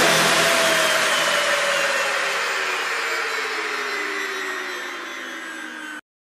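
A falling whoosh sweep sound effect closing the electronic music soundtrack: a noisy wash with tones gliding slowly down in pitch as it fades out over several seconds.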